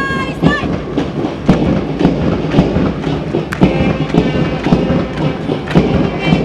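Marching band music for a parade march past: regular drum beats with short held brass notes.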